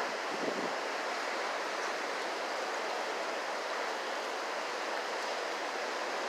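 Ocean surf washing onto a beach, heard as a steady even rush.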